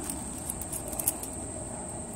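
Steady high-pitched insect trill with a few faint small clicks from a ring of keys being handled.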